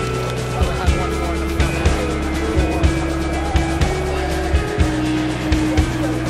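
Background music with a steady beat and a heavy, sustained bass line.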